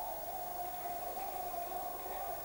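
Crowd cheering and shouting together in a hall, a dense, steady wash of many voices.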